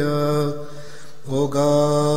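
One male voice chanting a Coptic liturgical hymn in long, ornamented held notes. It breaks off about half a second in and takes up the melody again about one and a half seconds in.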